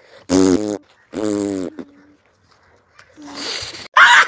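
Two short animal-like cries, each bending down in pitch, in quick succession, followed near the end by a brief hiss.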